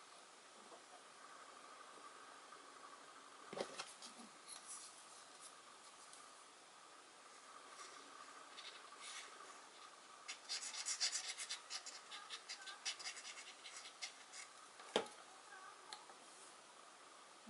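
Quiet handling of small wooden panel pieces and a glue bottle: a light tap a few seconds in, a run of rapid scratching and rubbing from about ten to fourteen seconds in, and a sharper tap near the end as a piece is pressed down onto the board.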